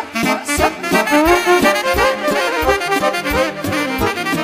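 A live band playing an instrumental passage of Romanian party music: a lead melody with quick ornamented runs and slides over chordal accompaniment and a steady beat.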